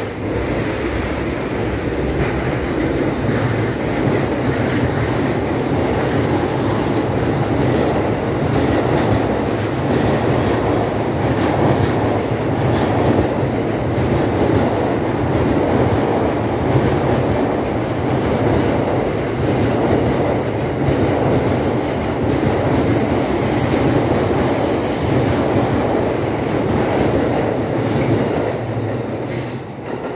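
JR East E233-3000 and E231-1000 series electric trains, coupled into one long train, running past without stopping: a steady, loud rumble of wheels on rail and running gear that lasts the whole time. Brief high wheel squeals come about a quarter of the way through and again toward the end.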